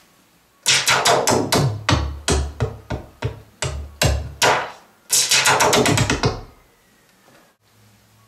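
Minimoog Voyager analog monophonic synthesizer playing a synthesized drum pattern: a quick series of very percussive hits, several with a deep bass thump, ending in a dense rapid flurry before stopping well before the end.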